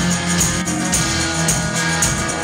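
Live rock band playing electric guitar, bass guitar and drums on a steady beat.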